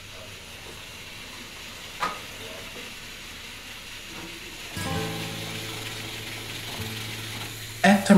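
Food sizzling and frying in a pan on a stove, with a single clink about two seconds in. About five seconds in, a sustained low musical note comes in and holds over the sizzle.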